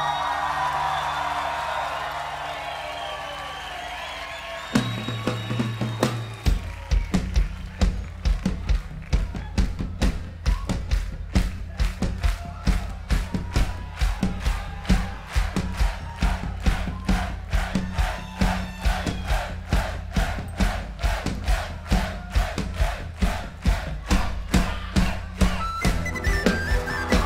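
Live folk band with a crowd cheering over a held low drone. About six seconds in, a steady drum beat starts over a deep bass note and keeps going as the next song begins.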